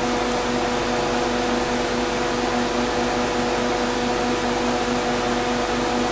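Steady hum with hiss, holding one constant low pitch, from a running motor or appliance.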